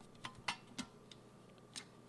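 A few faint, light clicks of a magnetic makeup pan shifting and snapping against the metal tin of an eyeshadow palette as it is handled.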